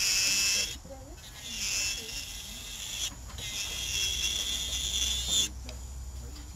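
Electric nail drill (e-file) running with a high-pitched whine as its bit files an acrylic nail, the whine dropping away briefly about a second in, at about three seconds, and near the end as the bit comes off the nail.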